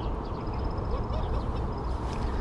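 Steady outdoor background noise with a deep rumble, and through it a faint, high, evenly pulsed insect trill.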